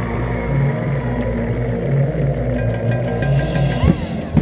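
Marching band music carried by a low, sustained droning passage, with short repeated high notes near the end.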